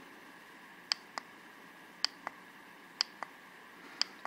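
Three quiet pairs of clicks about a second apart, with one more click at the end, from the push button on a plug-in timer switch being pressed. Each press steps the timer on to the next 5, 15, 30 or 60-minute setting.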